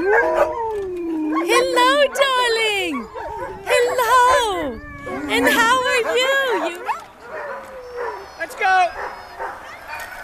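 Several harnessed sled dogs, Alaskan Malamutes and huskies, howling and yipping over one another in long calls that slide up and down in pitch. The calls are thickest through the first seven seconds and thin out near the end.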